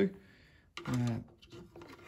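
Quiet room with a man's brief hesitant "uh" about a second in, then a few faint small clicks of handling as a bent-wire hook is put into the open fuel tank of a STIHL blower.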